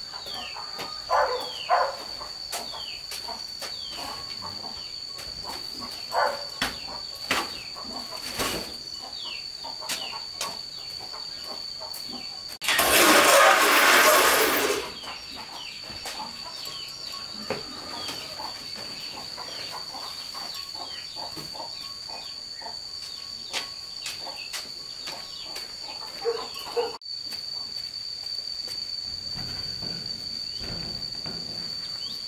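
Outdoor farmyard ambience: a steady high-pitched insect drone with many short, falling bird chirps repeating throughout. Near the middle, a loud burst of noise lasts about two seconds.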